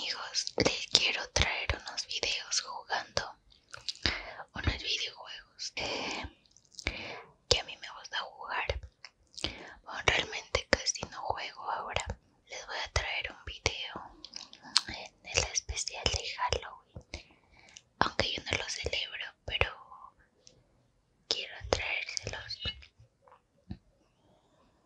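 Close-miked whispering broken by wet mouth clicks and the chewing of gummy candy, with short pauses near the end.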